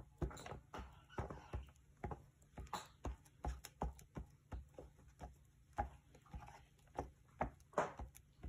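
Irregular light taps and paper rustles from hands handling and pressing down paper on a journal page, one to three taps a second.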